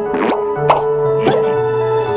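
Children's cartoon background music with a held note over a bass line, with three quick popping sound effects about half a second apart.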